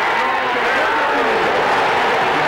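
Stadium crowd cheering a goal, with a commentator's voice over it.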